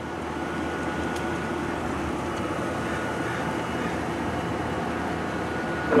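A steady mechanical drone with a faint high whine, swelling a little over the first second and then holding even.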